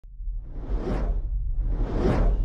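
Intro sound-effect whooshes: two swelling swooshes, peaking about a second in and again at the end, over a steady deep low rumble.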